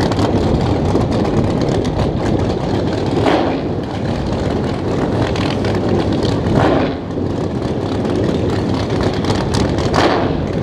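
Loud, choppy idle of big race engines on no-prep drag cars at the starting line, rapid and crackly. The engines are briefly revved about three seconds and six and a half seconds in.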